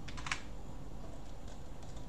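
A few quick clicks of computer keys: a cluster of three or four just after the start and a fainter couple near the end, over low steady room noise.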